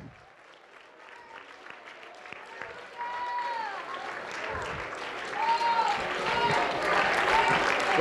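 A congregation clapping and shouting praise. It starts faint and builds steadily louder, with single voices calling out over the clapping.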